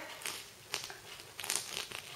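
A few short rustles and crinkles of a sequined knit sweater being handled, as a finger presses and rubs over the sequins.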